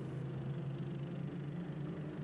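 Racing car engines at a motor racing circuit, a steady low drone.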